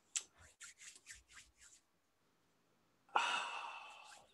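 Quiet, breathy laughter: a run of about seven short puffs of breath in the first couple of seconds. Near the end comes a sighed 'oh' that trails off.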